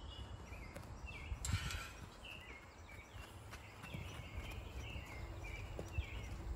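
Outdoor background with a low rumble and birds chirping in short, repeated calls, while a horse moves on soft dirt with a few faint hoof thuds. A brief rushing noise comes about one and a half seconds in.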